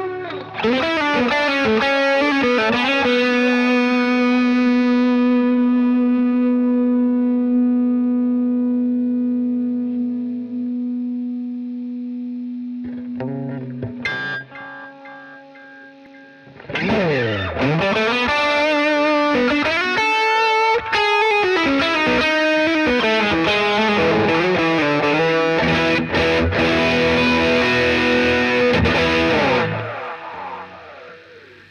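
Electric guitar played direct through a Valeton GP-200LT multi-effects amp simulator with delay on. A held chord rings out and fades over about ten seconds, a brief lull follows, then busier playing from about halfway with swooping dips in pitch.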